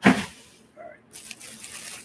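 Clear plastic bag of salad greens rustling and crinkling as it is gripped and twisted, a noisy stretch in the second half.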